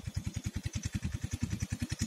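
An engine running, heard as an even, rapid low pulsing of about a dozen beats a second.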